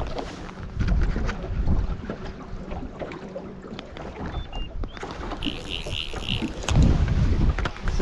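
Wind gusting on the microphone over choppy water slapping against a small boat's hull, with louder gusts about a second in and again near the end. A brief run of about four quick high-pitched pulses comes a little past the middle.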